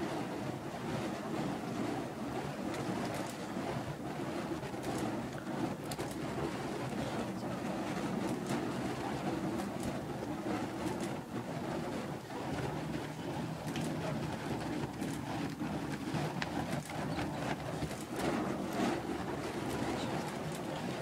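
Flaming fire poi spun on chains, a steady rushing whoosh of burning wicks swinging through the air, with faint scattered clicks.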